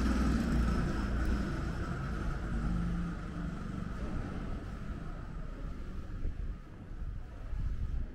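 A motor vehicle's engine running close by, starting abruptly and fading away over several seconds, with a low rumble underneath.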